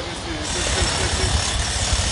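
Sea surf washing in over a stony beach: a steady loud wash of breaking waves and foam with a low rumble.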